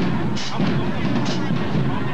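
Marching band drumline playing as it marches: booming bass drums with sharp, irregular snare and cymbal hits, over crowd voices.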